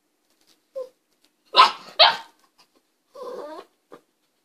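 Miniature pinscher barking twice in quick succession, about a second and a half in, followed near the end by a shorter wavering whine.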